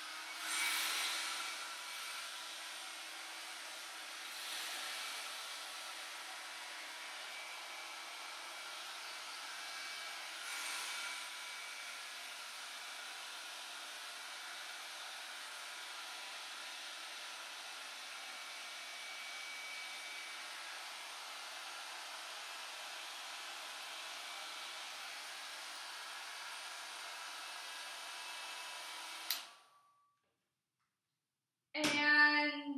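John Frieda volumizing hair dryer running steadily: a hiss of blowing air with a faint steady whine, briefly louder about a second in and again around ten seconds. It cuts off suddenly near the end as it is switched off.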